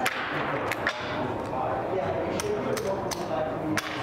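Casino chips clicking as they are counted out and set down in stacks on a felt blackjack table: a handful of sharp, separate clicks.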